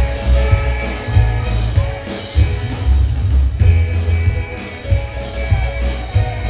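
Live rockabilly band playing an instrumental passage without vocals: drum kit with snare hits over heavy low bass and sustained guitar notes.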